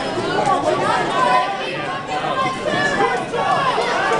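A crowd of spectators talking at once: many overlapping voices with no single clear speaker.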